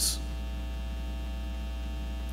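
Steady low electrical mains hum in the microphone and recording chain, with faint higher hum tones above it.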